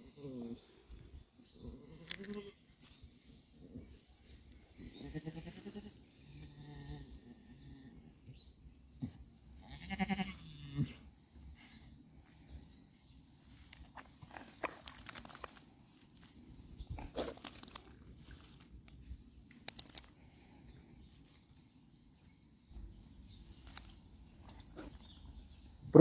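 A ewe in labour bleating a few times in short, wavering calls, the loudest about ten seconds in. Faint knocks and rustles of handling fall between the calls.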